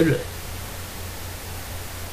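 The last syllable of a spoken word, then steady hiss with a low hum underneath: the background noise of the voice recording between lines.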